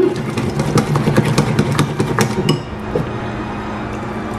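Wire whisk beating a thick flour-and-water batter in a bowl, its tines clicking rapidly and irregularly against the bowl's sides; the clicking stops about two and a half seconds in, leaving a steady low hum.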